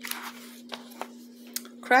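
A paper page of a picture book being turned: a short rustle, then a few light ticks of paper, over a steady hum.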